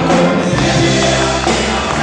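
Live band music with acoustic guitar and percussion, many voices singing together as the audience sings along.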